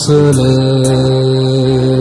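Konkani devotional hymn: a singer holds one long steady note over the accompaniment, with a light regular beat.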